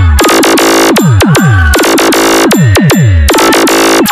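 Loud DJ 'competition' bass remix: an electronic dance track built on repeated deep bass drops that fall sharply in pitch, between dense bursts of harsh synth noise.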